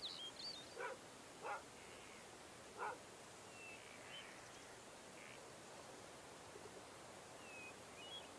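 Three short, distant animal calls in the first three seconds, and a few faint high chirps, over a quiet background.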